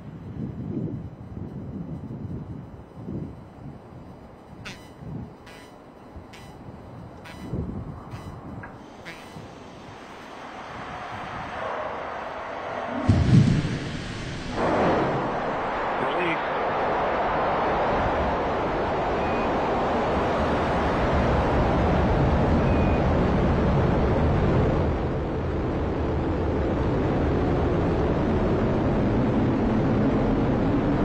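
About 13 seconds in, the Atlas V rocket ignites with a sudden loud burst: its RD-180 main engine and two solid rocket boosters light. A steady loud rocket-engine roar follows as it lifts off and climbs.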